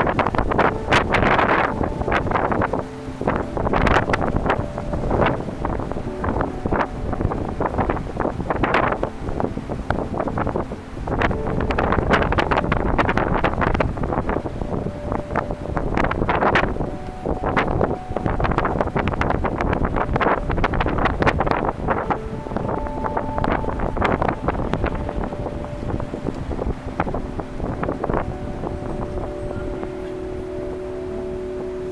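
Wind buffeting the microphone in irregular gusts, with faint held tones of ambient music underneath that become clearer near the end.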